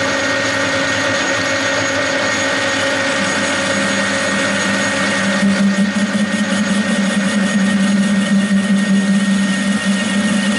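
Metal lathe running with a bar in a four-jaw chuck while the tool takes a turning cut. A strong low hum sets in about three seconds in, and a fine rapid rattle joins about halfway through: light chatter that persists even with the chuck moved closer to the spindle bearing.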